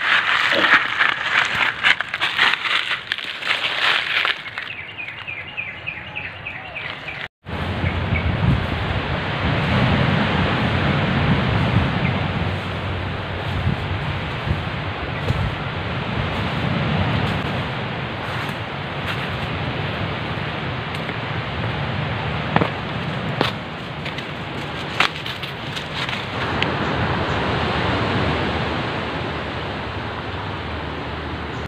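Dry fallen leaves crackling and rustling as a dog noses at a shot spotted dove among them. After a sudden cut about seven seconds in, there is a steady rushing wind noise on the microphone with a low rumble and occasional sharp crunches of footsteps in dry undergrowth.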